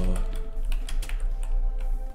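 Irregular clicking of typing on a computer keyboard.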